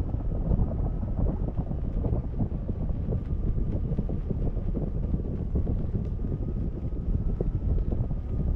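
Wind buffeting the microphone of a camera riding on a parasail high over the sea, a steady gusty rush heavy in the low end. A faint steady high whine runs underneath.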